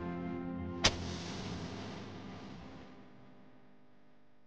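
Sustained background music breaks off as a match is struck about a second in: one sharp strike, then the hiss of the flame flaring, which fades over about two seconds.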